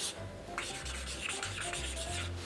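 Marker pen writing on a shikishi autograph board: a run of short, scratchy strokes of the pen tip across the card.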